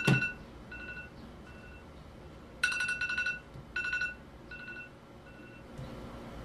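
Smartphone timer alarm going off, signalling the end of a 13.5-minute screen emulsion exposure: a repeating electronic beep pattern, short quiet beeps at first, then louder runs of rapid beeps from about two and a half seconds in, dropping back to quieter beeps near the end.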